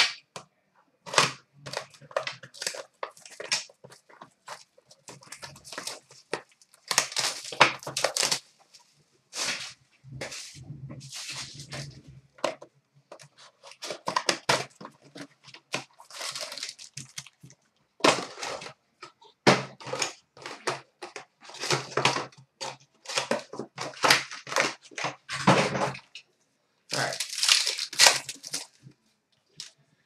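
Plastic shrink-wrap and packaging of a sealed Panini Certified hockey card hobby box being torn off and the box opened, then card packs handled: irregular crinkling and ripping throughout, with several longer tearing stretches.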